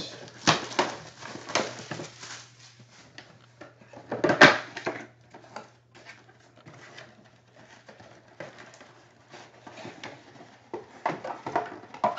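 Crinkling and rustling of a sealed trading card box's wrapper and cardboard as it is torn open and handled, with one loud crackle about four and a half seconds in. A low steady hum runs underneath.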